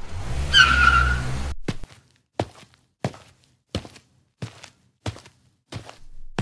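Car sound effect: an engine rumble with a brief tyre squeal as the car pulls up, cutting off about a second and a half in. It is followed by about seven evenly spaced footsteps, roughly one every two-thirds of a second.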